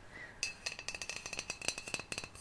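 Empty metal aerosol deodorant can worked close to the microphone: a fast, even run of light metallic clicks over a ringing note from the can, starting about half a second in.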